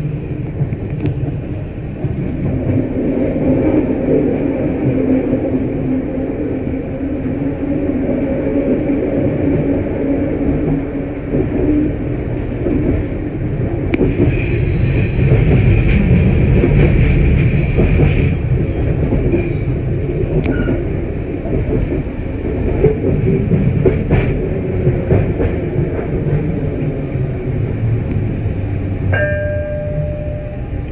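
Detroit People Mover automated train running along its elevated steel track: a steady rumble with a low hum. About halfway through, a higher squeal rises over it for a few seconds as the train rounds a curve. A short tone sounds near the end.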